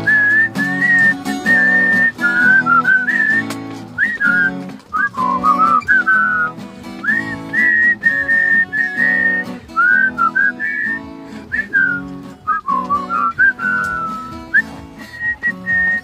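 Acoustic guitar strumming chords with a whistled melody over it, the whistle sliding and bending between notes.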